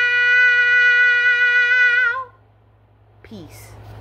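A woman's voice holding one long, high, steady note through a cupped hand, breaking off a little over two seconds in. A short falling sound follows about three seconds in.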